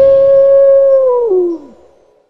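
A wolf howl: one long call that holds steady, then drops in pitch and fades out a little before the end.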